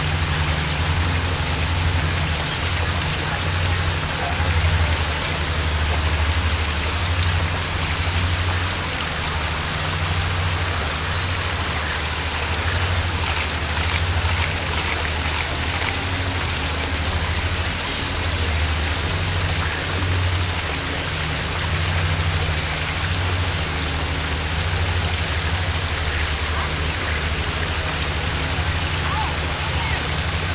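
Water falling over a small rocky cascade, a steady rushing splash, over a low, uneven rumble.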